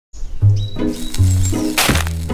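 Cartoon soundtrack music: a line of sustained low notes that changes pitch every half second or so. A short, sudden burst of noise, a sound effect, comes just before the end.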